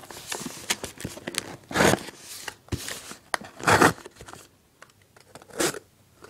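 Cardboard shipping box being torn open by hand: three rough tearing strokes about two seconds apart, with small clicks and scrapes of the cardboard between them.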